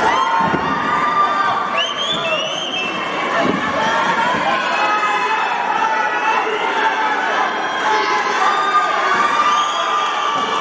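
Arena crowd cheering and shouting, many voices at once, with a few shrill rising shouts about two seconds in.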